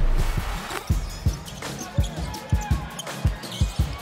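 A short burst of music from the highlight transition ends about half a second in. Then a basketball is dribbled on a hardwood court: low thuds, about two to three a second.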